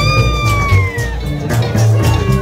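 Live acoustic roots band playing, with strummed acoustic guitars and a driving upright bass. A high, voice-like note swoops up and slowly slides down in pitch over about a second and a half.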